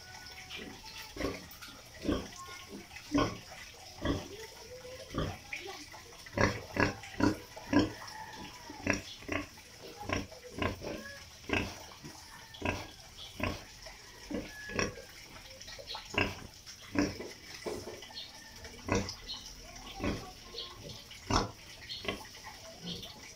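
Young sow grunting repeatedly, short grunts coming about one to two a second.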